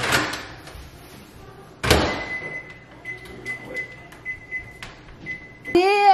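A microwave oven's door shutting with a sharp knock, and a second knock about two seconds later, then the microwave running with a faint low hum and a thin high whine. Just before the end, a voice starts a sung call.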